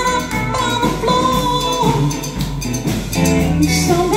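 Live band music from trumpet, cello, electric guitar and drum kit, with a woman singing into a microphone. A long note is held through the first couple of seconds.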